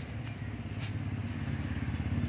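A small road-vehicle engine running with a low, rapid throb that grows steadily louder.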